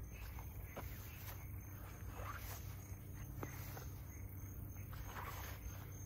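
Faint footsteps and rustling through tall grass and brush, a few soft scattered crunches over a low steady rumble.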